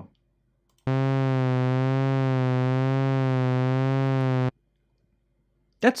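SynthMaster 2.9 software synthesizer holding a single low sawtooth note, softened by a filter, with a slow LFO vibrato bending the pitch both sharp and flat. The note starts about a second in and cuts off suddenly a little over three seconds later.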